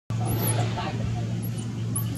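Baby macaque crying with repeated shrill squeals that rise and fall, a hungry orphan calling for milk. A steady low hum runs underneath.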